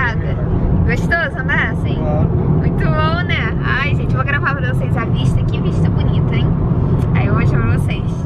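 Steady low road and engine rumble inside a moving car's cabin, with people's voices talking over it.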